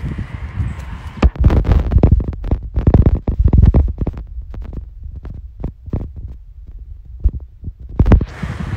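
Irregular low thumps and rumble buffeting a hand-held phone's microphone, dense and loud for the first few seconds, then sparser and weaker.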